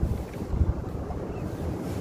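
Low, uneven rumble of wind and handling noise on the microphone, without any voice.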